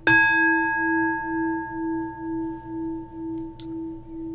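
A singing bowl struck once, its ringing tones fading slowly with a wavering pulse about twice a second.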